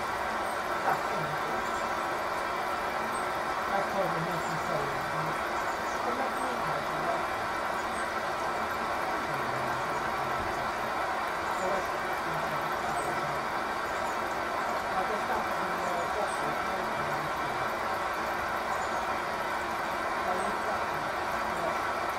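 Servis Quartz Plus washing machine filling with water for its first rinse: a steady rush of water through the inlet valve and detergent drawer, on low mains pressure.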